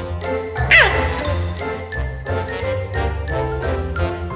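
Playful background music: a tinkling, bell-like melody over a steady bass beat, with a quick falling glide in pitch just under a second in.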